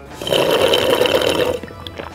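Cola slurped through a straw from a paper cup, a gurgling suck of air and the last of the drink at the bottom of a nearly empty cup, lasting about a second and a half before it dies away.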